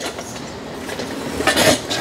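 Hands rustling and rubbing as a cloth tape measure is wrapped around the base of a bonsai trunk, with a louder scrape about a second and a half in, over steady background noise.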